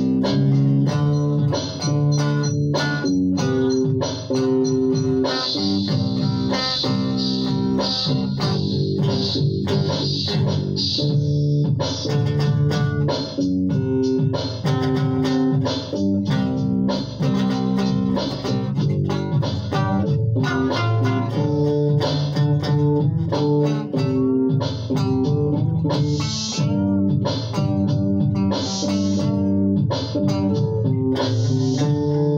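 Telecaster-style electric guitar played through an amplifier: a continuous run of picked notes and chords in a rock song.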